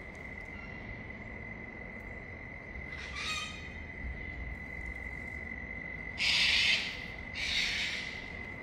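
A steady high-pitched insect trill carries on throughout. There is a short call about three seconds in, and two brief bursts of rustling near the end, the first the louder.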